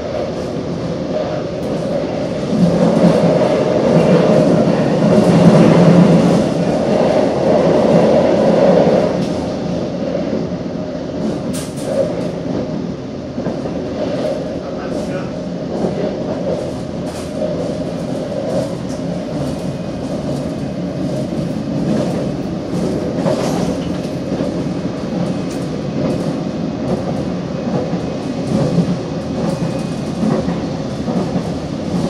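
A Korail Nuriro electric multiple unit running at speed, heard from inside the carriage. There is a steady rumble of wheels on track with scattered clicks, and it grows louder for several seconds near the start before settling.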